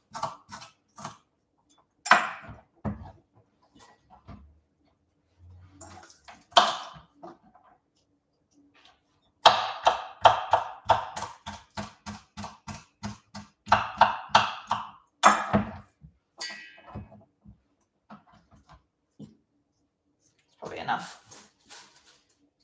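Knife chopping red bunching onion on a wooden cutting board: scattered strikes at first, then a fast run of chops in the middle, with a few scrapes of the blade across the board.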